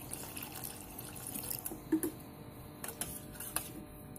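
Water poured from a plastic bottle into a steel bowl of curd, followed by a few light clicks in the second half.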